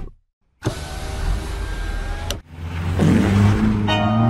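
Cartoon car sound effect: after a brief silence, a vehicle engine starts up with a hissing noise and the pickup truck drives away. The noise breaks off about two and a half seconds in, and a lower engine hum follows.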